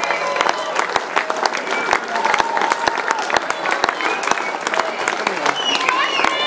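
Audience applauding, a dense steady clatter of hand claps, with voices calling out over it.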